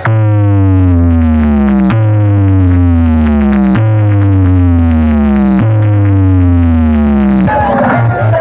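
Loud electronic music from a big sound system: a synthesizer tone with heavy bass slides down in pitch, and the same two-second sweep repeats four times before it cuts off near the end.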